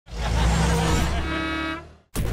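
Short cartoon logo sting: music with vehicle sound effects, ending on one held note that fades out just before the end.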